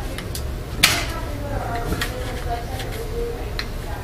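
Small plastic and metal clicks and knocks from a laptop being taken apart by hand, with one sharp snap about a second in and a few lighter ticks after it, over a low steady hum.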